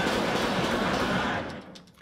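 Rapid gunfire from a handgun on a film soundtrack: shots fired in quick succession so that they run together into one continuous burst, which fades out near the end.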